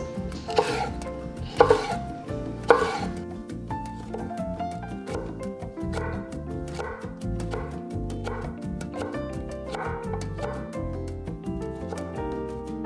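A chef's knife chops a yellow bell pepper on a wooden cutting board. There are three loud strikes in the first three seconds, then lighter, quicker chopping, all over background music.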